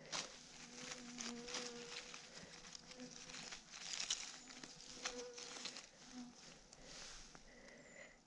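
A flying insect, fly-like, buzzing faintly near the microphone with a wavering hum that comes and goes. Faint rustles and small clicks from the leaf litter are heard along with it.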